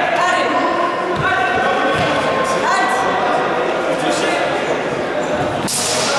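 Overlapping voices echoing in a large sports hall, with two dull thumps in the first two seconds and a sharp clack near the end.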